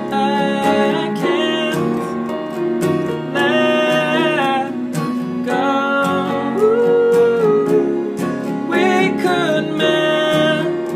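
A man singing a slow ballad to his own strummed acoustic guitar, with long held vocal notes over steady chords.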